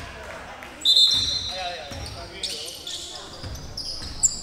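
Basketball play on a hardwood gym floor: sneakers squeak sharply about a second in, and the ball bounces, with players' voices calling around the court.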